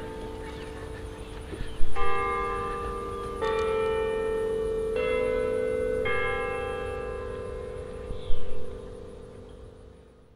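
A slow melody of sustained bell tones, each note ringing on and fading, with a new note every second or two. There are two short louder noises, about two seconds in and near the end.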